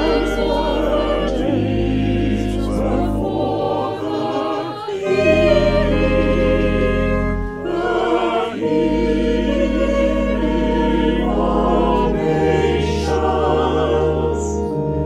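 A choir singing a sacred piece in long phrases with vibrato, over long held low notes that change every few seconds. There are brief breaths between phrases about five and seven and a half seconds in.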